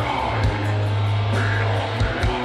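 Black metal band playing live: distorted electric guitars over a held low bass note, with a drum hit about halfway through.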